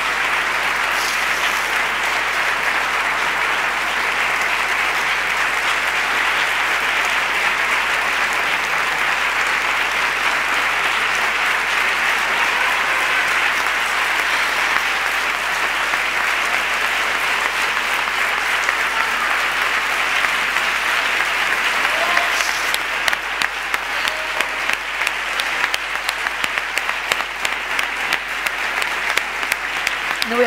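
Audience applauding, a dense, even clapping that thins out into more separate individual claps over the last several seconds.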